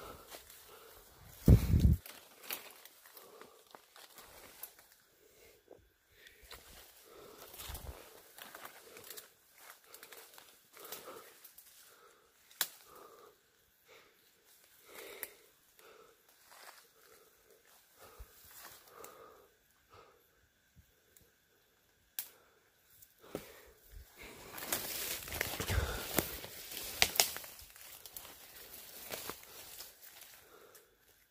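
Footsteps crunching on dry leaf litter and brushing through forest undergrowth: scattered crackles and rustles, with a louder stretch of rustling a few seconds before the end. A short low thump about a second and a half in is the loudest sound.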